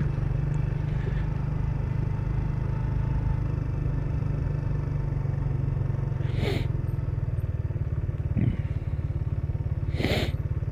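Motorcycle engine running steadily at low revs while the bike rolls slowly along, a low, even pulsing drone.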